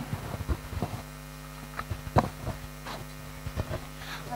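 Steady low electrical mains hum from the stage's microphone and PA system between spoken lines, with a scatter of faint clicks and knocks from microphone handling.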